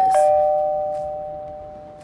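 Two-note ding-dong doorbell chime: a higher note struck, a lower note a moment later, both ringing on and fading slowly.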